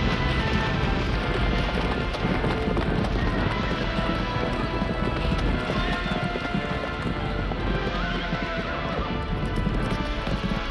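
A herd of horses galloping, a dense patter of many hoofbeats with horses neighing now and then, under a music score.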